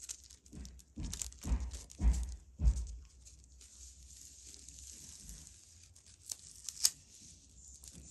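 Thin tissue paper tearing and crinkling as gloved fingers work it onto a glue-coated board. A few short, loud bursts with dull thumps come about one to three seconds in, then quieter rustling and a couple of sharp clicks.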